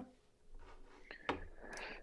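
A quiet pause in a conversation: faint room tone with one soft click a little over a second in and a faint breath just before the next speaker answers.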